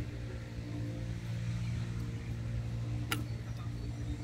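Steady low mechanical hum with even pitched tones, with a single sharp click about three seconds in.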